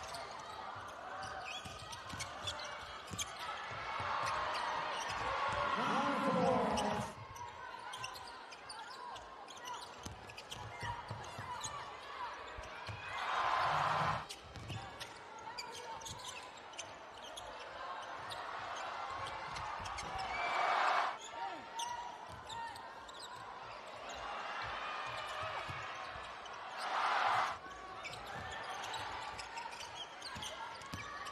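Live arena sound of a basketball game: a basketball being dribbled on the hardwood court under a steady murmur of crowd voices. Short crowd swells rise three times: about halfway through, about two-thirds of the way in, and near the end.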